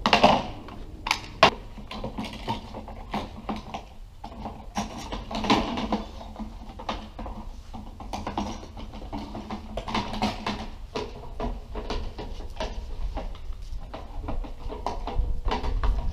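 Small battery-powered flip-switch lights being clicked on and set down one after another on a table: a run of irregular plastic clicks and knocks, the sharpest near the start.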